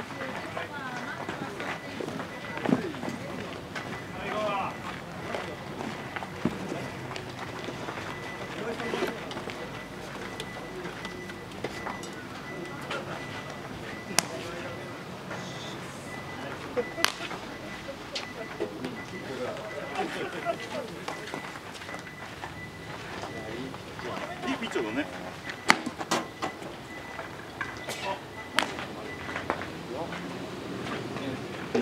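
Players' voices calling out across an outdoor baseball field, with a few sharp pops scattered through it, typical of a baseball smacking into a leather glove.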